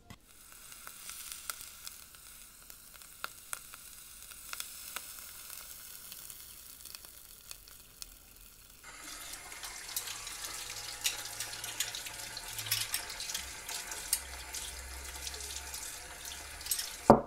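A knife cutting tomatoes on a wooden chopping board, soft irregular knocks over a faint hiss. About nine seconds in, a louder crackling sizzle starts: sliced onions and green chillies frying in oil in a pan.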